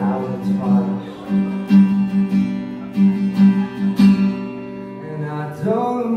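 Acoustic guitar strummed in slow chords, with a male voice singing a held, sliding line at the start and again near the end.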